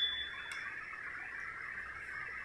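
Electronic voting machine giving a steady high-pitched beep, the signal that a vote has been recorded. The beep fades out within the first second, leaving faint room noise.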